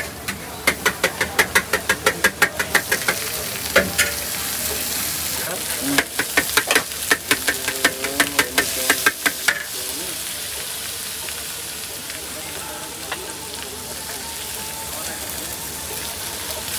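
Metal ladle clanking and scraping against a wok during stir-frying, with food sizzling. The clanks come in two quick runs of several strikes a second, each lasting about three seconds, and give way to a steady sizzle for the last several seconds.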